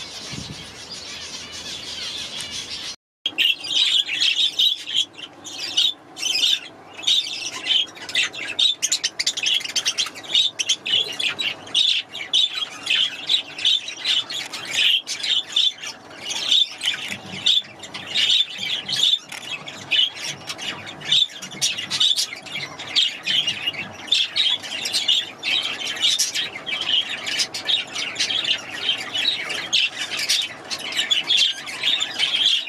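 Small parakeets chirping softly, then after a short break about three seconds in, many small parakeets chattering loudly and without a pause, with squawks mixed in.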